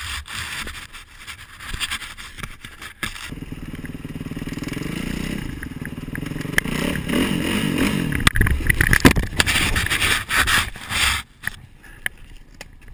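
Kawasaki KX450F dirt bike's single-cylinder four-stroke engine comes in about three seconds in and runs, then revs up and down, with knocks and scrapes in the last few seconds that end abruptly as the bike goes down. Scattered knocks and rustling come before the engine.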